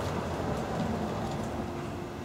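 Steady low background noise in an outdoor pause between words, with a faint hum joining about a second in.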